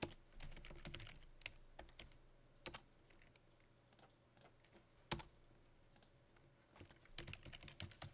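Faint computer keyboard typing: scattered, irregular keystrokes as commands are entered, with one sharper, louder click about five seconds in.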